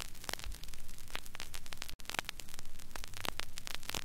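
Surface noise of an old recording in the pause between the quartet's first and second movements: steady static hiss with low hum, dotted with irregular clicks and crackles, and a brief dropout about halfway through.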